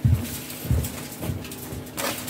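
Four dull low thumps about half a second apart, over a faint steady hum.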